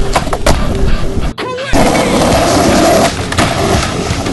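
Skateboard wheels rolling on hard ground, with a few sharp clacks of the board near the start. The sound drops out briefly about a third of the way through.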